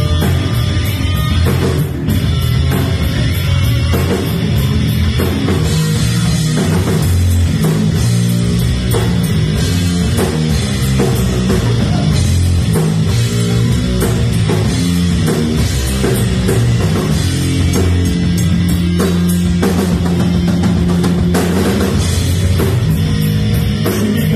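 Live rock band playing an instrumental passage on electric guitar, bass guitar and drum kit, loud and steady, with no vocals.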